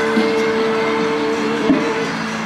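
Live street music from a busker: one long note held steadily through, with lower notes shifting beneath it, part of a song sung to guitar.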